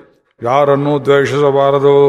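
Only speech: a man's voice in a steady, chant-like recitation, starting about half a second in after a brief pause.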